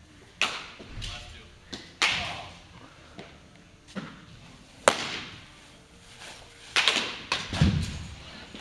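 A string of sharp knocks and thuds echoing around a large indoor hall. The sharpest crack, about five seconds in, just after the pitcher's delivery, is a pitched baseball smacking into a catcher's mitt.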